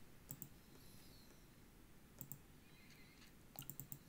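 Computer mouse button clicking in quick pairs of double-clicks that open folders: one pair soon after the start, another about two seconds in, and a quick run of four clicks near the end. The clicks are faint over near-silent room tone.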